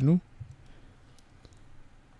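A few faint, scattered computer keyboard keystrokes while code is typed.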